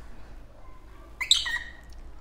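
A pet African lovebird giving a quick, high-pitched cluster of chirps about a second in.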